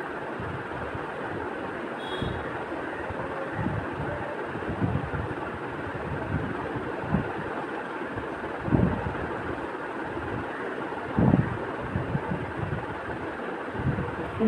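Steady hiss of a fish curry simmering in a wok, with irregular soft knocks and scrapes as a spoon and spatula work through the fish to pick out the bones.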